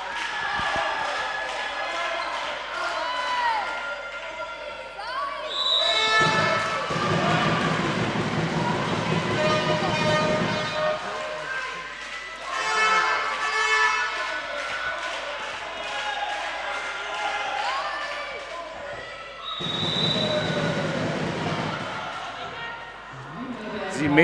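Handball match in a sports hall: a handball bouncing on the hall floor amid players' calls and voices from the bench and stands, all echoing in the hall.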